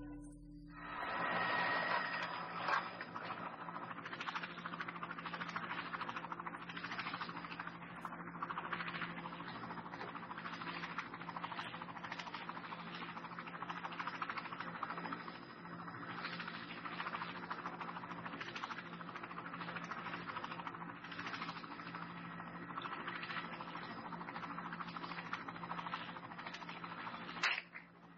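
A steady, rough mechanical drone with a constant low hum under a dense, fast-beating noise, from a wildlife video's soundtrack played over room speakers. It starts about a second in and cuts out just before the end.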